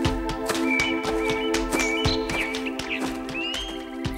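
Background music for a cartoon: steady held chords with a quick, regular tapping beat and a few short high notes on top.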